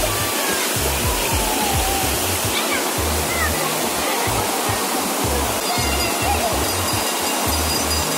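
Steady rush of water running down a water slide and pouring into the pool, with music's bass beat underneath and faint distant voices.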